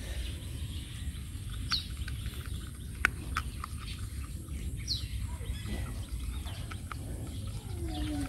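Two short, falling bird chirps, about three seconds apart, over a steady low rumble, with a few scattered sharp clicks, the loudest about three seconds in.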